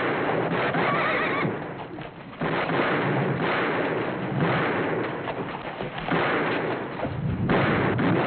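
A band of horses galloping hard on a dirt street, their hooves massed together, with a horse whinnying about a second in.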